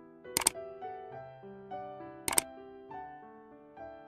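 Soft piano background music, with two sharp double-click sound effects from a like-and-subscribe button animation: one about half a second in and another just after two seconds.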